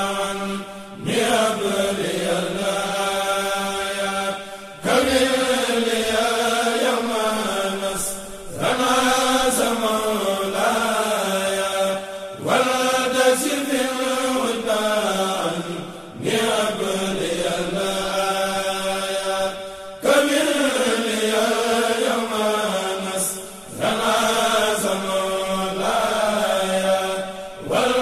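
Islamic religious chant in Arabic, sung in repeated phrases of about four seconds, each followed by a short break.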